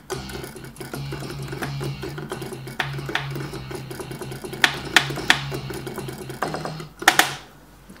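Kurzweil K2600 synthesizer playing a self-made sampled patch: a short phrase of repeated low held notes played on the keyboard. A few sharp clicks land about three, five and seven seconds in.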